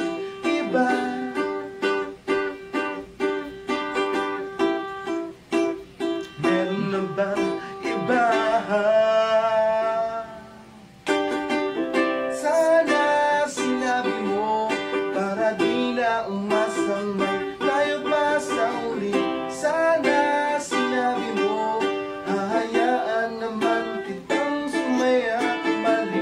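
A man singing a pop song while strumming a ukulele. About eight seconds in he holds a long, wavering note that fades away, then the strumming and singing come back in suddenly about three seconds later.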